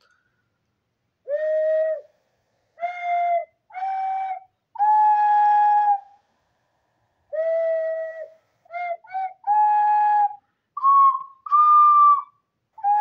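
A slow, soothing melody played as about ten separate held notes in a pure, flute-like whistle tone, with short pauses between them; the notes climb higher near the end.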